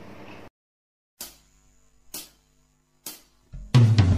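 A song's backing track starting: three short drum clicks about a second apart count it in, then the full band with drums comes in loudly near the end.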